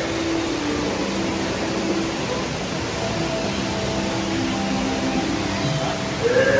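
Steady rushing background noise of a dark boat ride's cave scene, with faint held notes of the ride's background music underneath.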